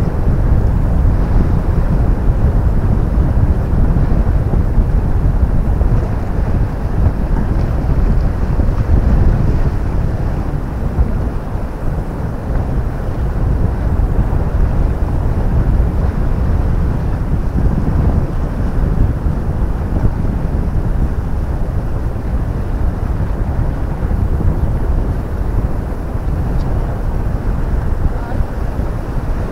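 Wind buffeting the camera's microphone: a loud, steady low rumble that rises and falls in gusts.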